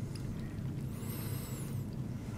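A creamy vegetable-and-egg quiche filling being poured and scraped from a pan into a pastry-lined dish: soft, faint wet sounds over a steady low hum.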